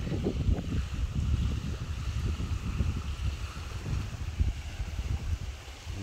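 Wind buffeting the microphone in uneven low gusts, over a faint steady hiss of wind-driven waves on the reservoir shore.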